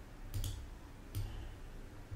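Computer mouse clicks: a quick pair about a third of a second in and a single click just past a second.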